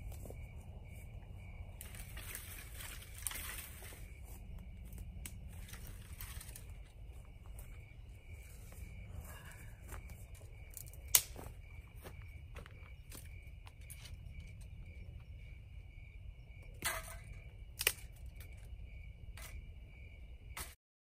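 Dry brush and branches rustling as they are pulled and carried by hand, with a sharp crack about halfway and two more near the end, over a steady pulsing chirr of insects.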